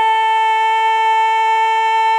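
A woman's singing voice holding one long high note, steady in pitch, as the tango song nears its end.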